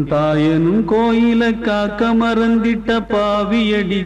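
A voice chanting syllable after syllable on one nearly unchanging note over a steady low drone, like a recited mantra.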